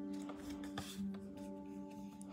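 Soft ambient background music of long held tones, with the dry slide and rustle of glossy tarot cards moved by hand, loudest just before a second in.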